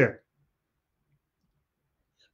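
A man's speaking voice cuts off at the very start, then near silence.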